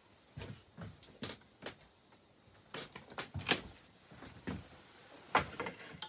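Scattered knocks and clunks as a plate of bread is set down on a wooden cabin table and someone sits down to it, about ten separate knocks with the loudest about three and a half seconds in.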